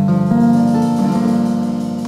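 Live acoustic string band, guitars and other plucked strings, playing sustained chords of a waltz.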